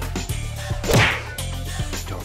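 Intro music with a steady low beat, cut through about a second in by one loud whip-like swoosh-and-hit sound effect.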